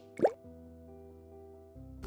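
Title-card animation sound effects: a quick rising pop about a quarter second in as the logo appears, followed by a soft held music chord that shifts just before the end.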